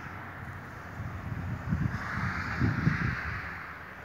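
Wind buffeting the microphone in irregular low gusts, with a rushing hiss that swells about halfway through.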